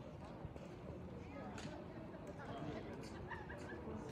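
Faint, indistinct voices in the background, with a few short high-pitched calls about three seconds in.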